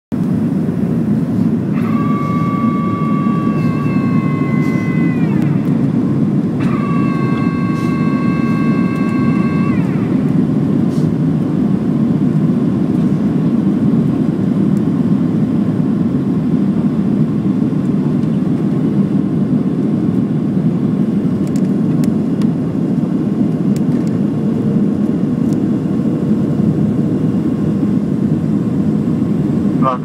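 Steady low roar of a jet airliner's cabin on its descent to land: engines and airflow heard from a window seat over the wing. A high, steady whine sounds twice, about two seconds in and again about seven seconds in, each lasting a few seconds and dropping in pitch as it stops.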